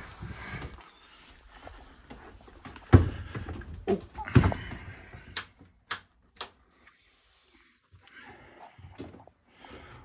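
Knocks and thumps of someone stepping through a wooden cabin door and down into a narrowboat's cabin: one heavy thump about three seconds in, a few lighter knocks, then three sharp clicks about half a second apart.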